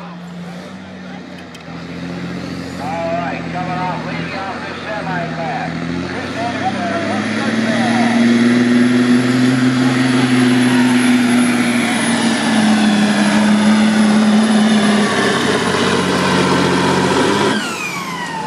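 Diesel engine of a 1988 Kenworth W900 pulling a sled under full load. It grows louder through the first half and then holds a steady, heavy drone with a thin high whistle above it. The engine drops off suddenly near the end as the pull ends.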